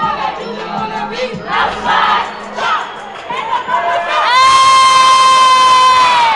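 A crowd of teenagers shouting and cheering. About four seconds in, a handheld air horn blasts one loud, steady note that holds for about two seconds.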